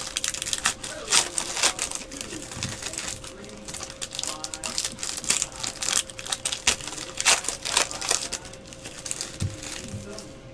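Foil wrappers of trading-card packs crinkling and tearing as the packs are ripped open and handled, in a long run of crisp, irregular crackles and rustles.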